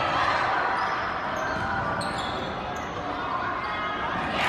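Indoor basketball game sounds in a gym: a basketball bouncing on the hardwood court amid the voices of players and spectators.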